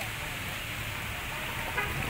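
Steady outdoor background noise with a low, uneven rumble and a hiss, and a brief voice near the end.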